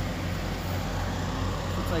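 Fire engine running steadily at a constant speed, driving its water pump to feed the hose lines. A low, even hum with a steady rush of noise over it.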